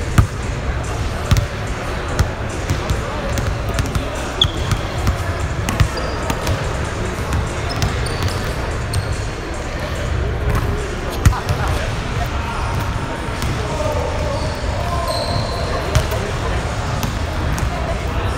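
A basketball bouncing on a hardwood gym floor, sharp thuds at irregular intervals, with background voices in the hall.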